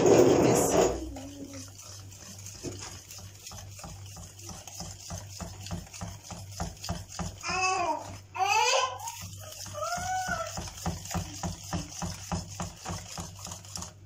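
Wire whisk beating thick cake batter by hand in a mixing bowl: quick, even scraping strokes. A few high, wavering cries rise over it around the middle.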